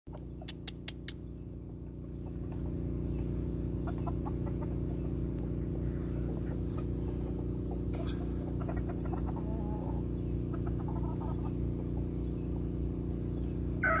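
Asil–Sonatol gamecock giving faint, scattered clucks over a steady low hum, with a few sharp clicks in the first second. Right at the end it begins a loud crow.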